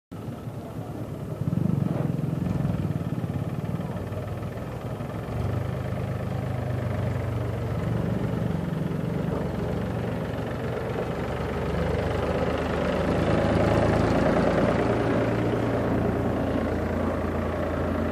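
Farm tractor engine running as it hauls a loaded trailer past, a steady low engine sound that grows louder about two-thirds of the way in.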